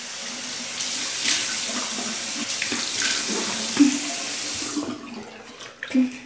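Bathroom sink tap running while water is splashed onto the face to rinse off face wash. The running water stops about five seconds in.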